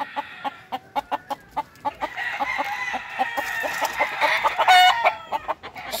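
Roosters in their pens: a run of short clucks and ticks, a faint drawn-out crow in the middle, and a brief louder call near the end.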